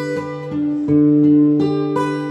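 Acoustic guitar played on its own: a few chords are struck and left to ring.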